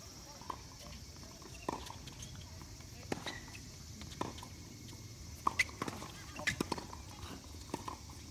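Tennis balls popping off racket strings and bouncing on a hard court, a string of sharp single hits spaced irregularly, with several in quick succession in the second half.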